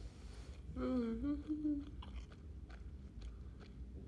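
A person chewing food with the mouth closed, giving small wet mouth clicks, with a brief hummed 'mm' of about a second near the start.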